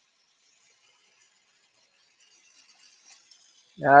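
Near silence: faint room tone, with a man starting to speak near the end.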